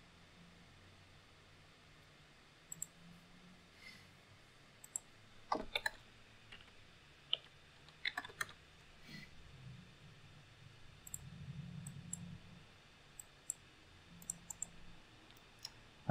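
Faint computer mouse and keyboard clicks, a dozen or so short taps at irregular intervals.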